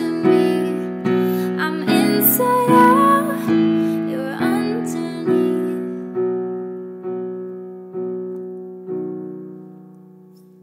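Piano outro: sustained chords struck one after another and left to ring. They come more slowly toward the end, and the last chord dies away.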